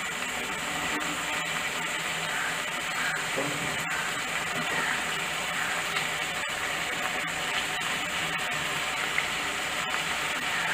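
Onions, curry leaves and cubed brinjal sizzling steadily in hot oil in an aluminium pot.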